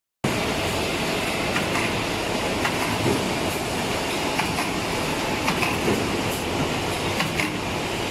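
Aluminium-foil blister packing machine running: a steady mechanical clatter with irregular light clicks and knocks throughout.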